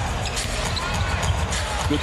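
Basketball being dribbled on a hardwood arena court, low thumps, over a steady hum of arena crowd noise.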